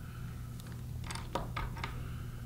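Four or five faint clicks and light handling noise from fly-tying materials, most likely scissors and a strip of 2 mm craft foam being cut, about a second in. Under them runs a low steady hum.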